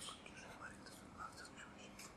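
Near silence: room tone in a small room, with a few faint, soft, short sounds.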